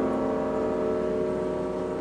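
Grand piano chord held and ringing, slowly fading with no new notes struck.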